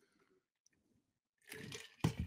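Near silence with faint sounds of sipping from a drink bottle. About one and a half seconds in, a louder breathy rush comes in.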